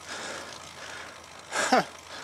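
Steady rolling and wind noise of a road bike riding over rough, cracked asphalt, heard from a handlebar-mounted camera. Near the end the rider lets out a short breathy 'ha' that falls in pitch.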